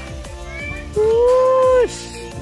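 Background music with a man's voice calling out one long held "hoo" about a second in, the loudest sound here.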